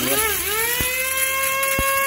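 Small electric dry grinder's motor spinning up with a rising whine in the first half second, then running at a steady high whine while its blade grinds white rice into powder, with two sharp ticks along the way.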